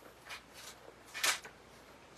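Thin paper Bible pages being turned: a few short, soft rustles, the loudest about a second and a quarter in.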